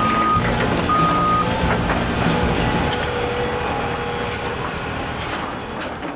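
Construction-site heavy vehicle running with its reversing alarm beeping twice near the start, then a steady engine rumble with a few knocks that slowly fades down.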